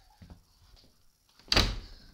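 A door shutting with one loud thud about one and a half seconds in.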